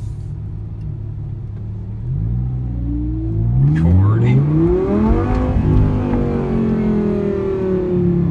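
V10 sports-car engine heard from inside the cabin, at first a steady low drone. About two seconds in it accelerates hard, its pitch climbing, dropping at a gear change, then climbing again. It then levels off and eases down slowly near the end.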